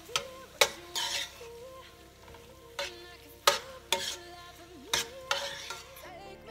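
A metal spoon stirring frying vegetable masala in a stainless steel sauté pan. There are about five sharp clinks of the spoon against the pan, with scraping and sizzling bursts between them.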